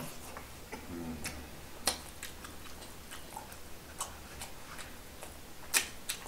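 Eating sounds of people chewing fried chicken: scattered sharp mouth clicks and smacks, a dozen or so, the loudest just before the end. A brief hum about a second in.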